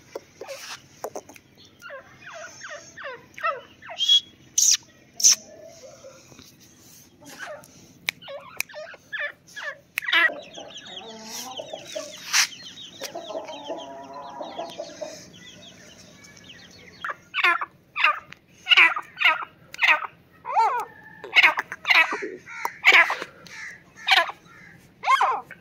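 Hen clucking in the middle of the stretch. From about two-thirds of the way through, a grey francolin calls loudly and over and over, about two calls a second.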